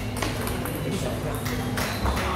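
Table tennis ball clicking sharply off the rackets and table during a rally, a few separate ticks spread across two seconds, over the steady chatter of a busy playing hall.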